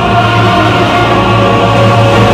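Music with a choir holding long, sustained notes over a steady low drone.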